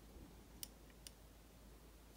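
Near silence: room tone with a few faint, sharp clicks in the middle, from a plastic action figure and paintbrush being handled during hand painting.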